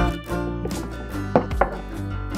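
Two short, sharp knocks on a plastic cutting board, close together about a second and a half in, as carrots and a kitchen knife are handled on it. Background music plays throughout.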